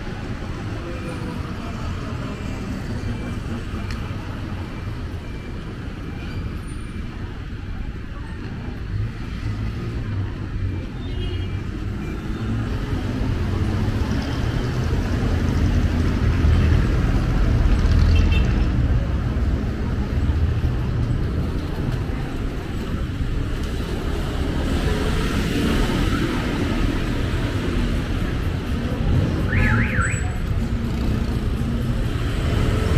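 City street traffic: the engines of cars and motorcycles passing, the rumble swelling louder around the middle. A faint high beep repeats about twice a second in the first few seconds.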